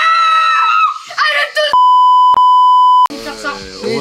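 A woman's long, high-pitched yell, a few quick words, then a steady one-pitch bleep tone, about a second and a half long, that completely replaces the audio, the kind of edit used to censor a word. Normal talking resumes right after the bleep.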